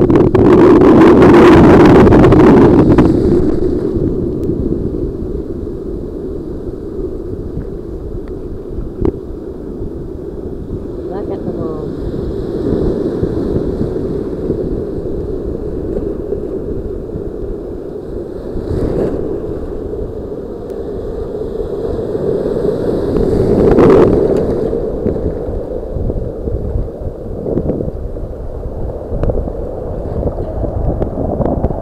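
Ocean surf washing and rushing around a camera held down at water level, with wind buffeting the microphone. The water sounds dull and muffled. It surges loudest in the first few seconds and again about three-quarters of the way through.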